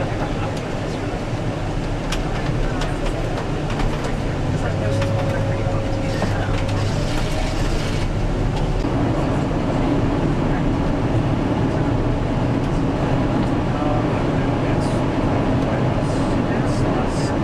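Steady road and engine noise heard from inside a moving vehicle, a continuous low rumble.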